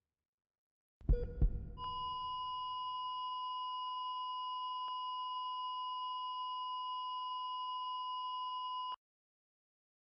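Two low heartbeat thumps, then a heart monitor's steady flatline tone, held for about seven seconds and cutting off suddenly.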